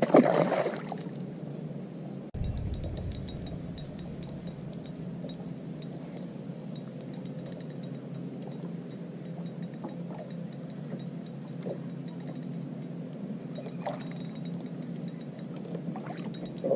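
Water lapping against a boat hull, with small clinks and ticks over a steady low hum. A short louder sound comes right at the start, and a brief deep rumble follows about two seconds in.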